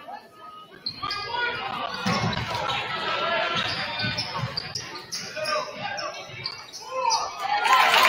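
A basketball being dribbled on a hardwood gym floor, with sneakers squeaking as players run, over crowd voices echoing in a large gym. The crowd gets louder near the end.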